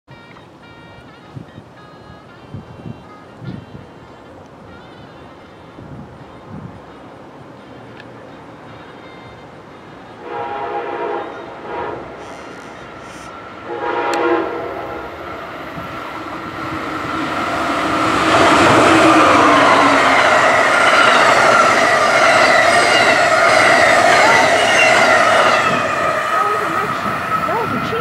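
Amtrak ACS-64 electric locomotive's horn sounds a long blast about ten seconds in, then a shorter one about four seconds later. After that the train passes at speed, a loud rumble and rail noise with a steady high whine for about eight seconds, easing off near the end.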